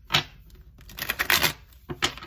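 A deck of tarot cards being shuffled by hand. There is a sharp click just after the start, a quick run of riffling card clicks through the middle, and another click near the end.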